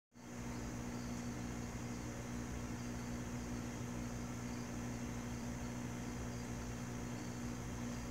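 Steady hum and hiss of aquarium aeration: an air pump running and a stream of air bubbles rising through the tank water from an airline tube.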